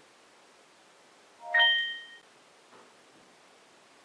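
Samsung Galaxy S5 notification chime, a short electronic ding about a second and a half in: a few lower notes, then a brighter ringing tone lasting under a second. It signals a motion-detected alert from the Hubble security-camera app arriving on the phone.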